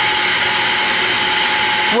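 Steady, loud machinery noise from the pumps and process equipment of a membrane filtration plant's building: an even rushing hum with a steady high whine running through it.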